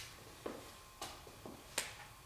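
Faint footsteps on a hard floor: a series of sharp clicks about half a second apart.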